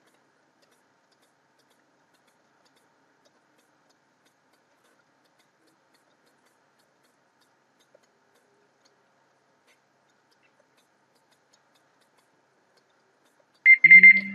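Near silence, then near the end a timer alarm beeps loudly with a steady tone, marking the end of a 30-second timed exercise.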